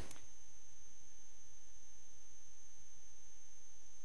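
Steady electrical hum with a faint high-pitched whine, unchanging throughout.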